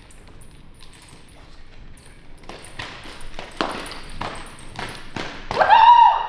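Nunchaku being swung, whooshing through the air in a quick run of swishes, about three a second, after a few quiet seconds with faint light ticks. The run ends with a short rising shout (a kiai) as she strikes her finishing pose.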